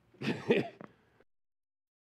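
A man's short, raspy burst of laughter that cuts off suddenly just over a second in.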